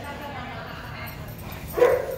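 Dogs whining and yipping, with one loud yip near the end.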